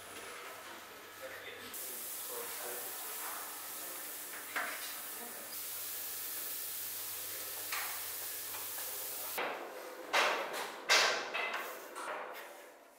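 A steady sizzling hiss from a hot tray of freshly syruped pistachio baklava, starting and stopping abruptly. Near the end come a couple of sharp knocks, the loudest sounds.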